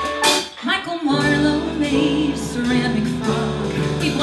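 Live pop-rock band of piano, bass, electric guitar and drums: a sharp drum hit just after the start, a brief lull, then the full band comes in about a second in, with a woman singing over it.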